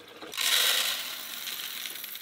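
Whole coffee beans poured from a glass jar into the bean hopper of a Terra Kaffe TK-02 super-automatic espresso machine: a rattling hiss of beans that starts about a third of a second in and slowly fades.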